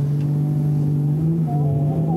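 A drift car's engine idling with a steady low hum, its pitch shifting slightly about one and a half seconds in.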